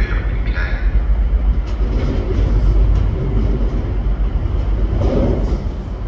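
Class 185 diesel multiple unit arriving at a station platform: the steady low rumble of its diesel engines and wheels on the rails.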